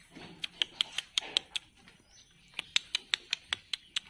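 A young goat's hooves clicking on a bamboo slat floor as it walks, in two quick runs of sharp clicks: one in the first second and a half, one over the last second and a half.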